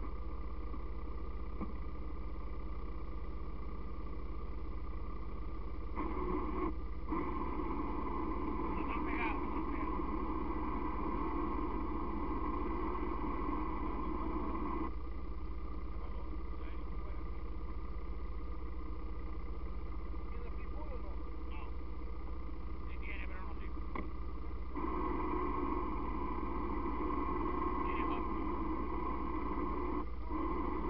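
ATV engines idling steadily, with two stretches of several seconds where the mechanical sound gets louder, about six seconds in and again from about twenty-five seconds.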